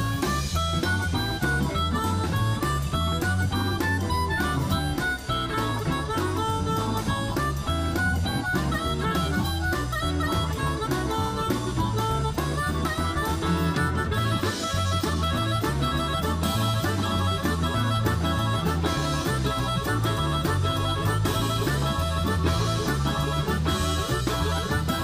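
Blues harmonica solo played into a hand-held microphone, over a live band's electric guitar, bass guitar, drum kit and keyboard in a steady shuffle groove.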